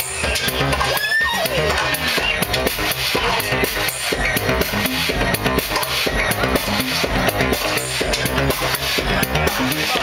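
Electronic dance music from a DJ set played loud over a club PA, with a steady kick-drum beat. About a second in, a tone sweeps down in pitch over the beat.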